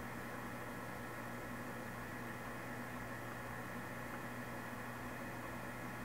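Victor 24120G gap-bed engine lathe running steadily with its power cross feed engaged: an even hum with a few faint, steady higher whining tones from the drive.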